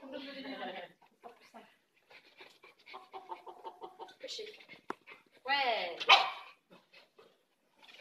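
A dog barks in a short loud burst a little past halfway, with low voices around it.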